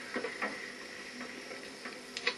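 Quiet, steady background hiss with a faint high thin tone, broken by a few faint soft clicks in the first half second.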